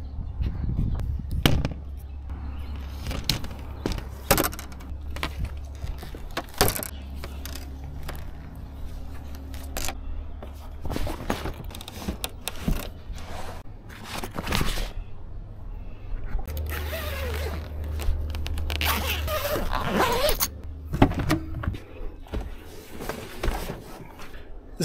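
A portable folding solar panel suitcase being packed away: irregular knocks, clicks and scrapes as the panel frames and handle are folded and handled. This is followed by rustling and scraping as the panels slide into a padded fabric carry case and the case is lifted and pushed into a vehicle's back seat.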